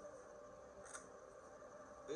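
Near silence: quiet room tone, with one faint brief rustle about a second in.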